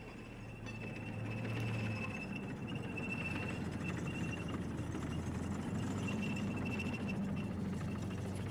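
Armoured military vehicle's engine running, swelling over the first two seconds and then holding steady as a low hum, with a thin whine above it.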